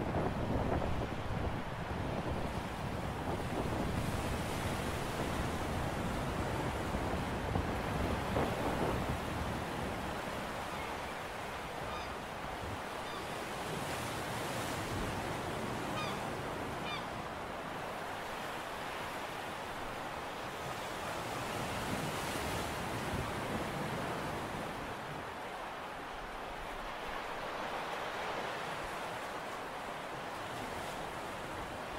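Sea surf washing against a rocky shore, a steady rushing noise with wind on the microphone, a little louder in the first few seconds. A few faint short high chirps sound around the middle.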